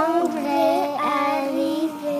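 A child singing a slow melody in held notes.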